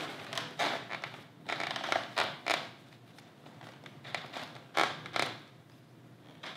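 Close handling noise from neckband Bluetooth headphones and a full-face motorcycle helmet: a string of short rustles, scrapes and creaks, most of them in the first two and a half seconds, with a few more near the end.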